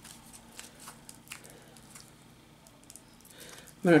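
Faint, sparse crinkling of aluminium foil squeezed by hand around a wire armature, a few soft crackles in the first second or so, then mostly quiet.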